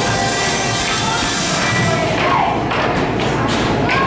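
Inflatable beach balls thumping as they are thrown and bounce, with several hits mostly in the second half, over loud background music.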